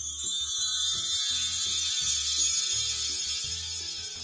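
Background music with a low bass line under a steady high shimmering hiss, the sound effect of an animated subscribe-button graphic, which fades out near the end.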